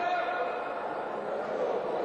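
Voices in a sports hall: people talking and calling out over a steady background murmur.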